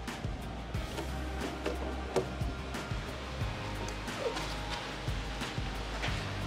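Background music with a steady low bass line that changes note about halfway through, and a few faint knocks.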